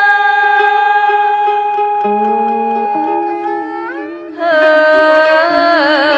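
Woman singing a long held note in Vietnamese folk style over traditional instrumental accompaniment with plucked lute notes; about four and a half seconds in, a louder new phrase begins with wide vibrato.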